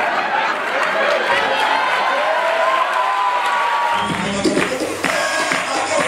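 Live stage music with a voice singing held notes over audience cheering; about four seconds in, a bass-heavy backing comes in.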